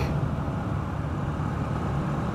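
A 125 cc motorcycle engine running at steady revs while cruising at a constant road speed, with steady wind and road noise over it.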